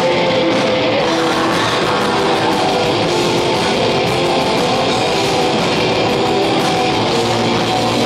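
Black metal band playing live, loud and unbroken: heavily distorted guitars over fast drumming with rapid cymbal hits.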